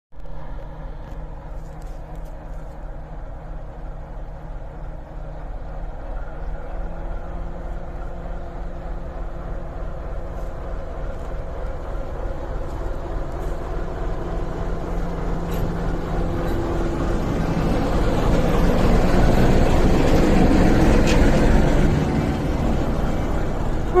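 Diesel shunting locomotive S-291 approaching under power: the engine's steady low running note with the rumble of wheels on the rails, growing steadily louder to its loudest a few seconds before the end as it draws level.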